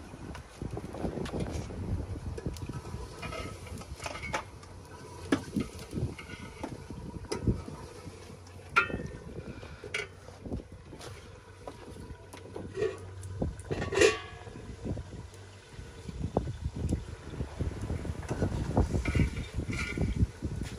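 Clinks and knocks of metal cooking pots and a steel lid, the loudest a ringing clank about two-thirds of the way in, over a low rumble and a faint steady hum that stops about three-quarters of the way through.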